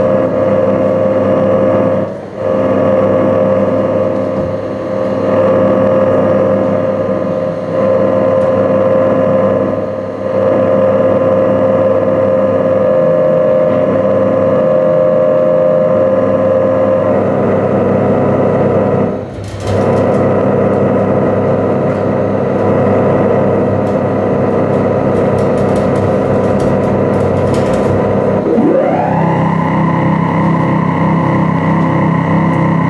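Improvised noise music: dense, distorted drones from electronics and an upright double bass played through effects, many held tones stacked together. It drops out briefly a few times and ends with a rising swoop in pitch near the end.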